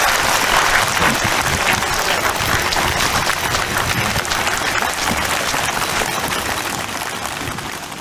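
A large crowd applauding, many hands clapping in a dense, steady patter that slowly dies down toward the end.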